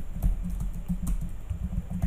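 Typing on a computer keyboard: a fast, uneven run of key clicks.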